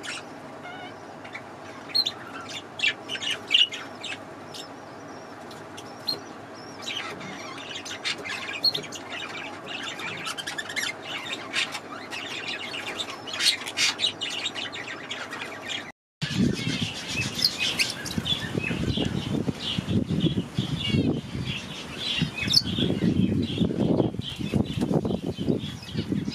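Caged parakeets chirping and twittering, short high calls in quick clusters over a low steady hum. After a sudden break about two-thirds of the way through, the chirping goes on louder, over low rumbling.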